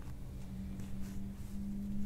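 A low, steady hum over faint background noise.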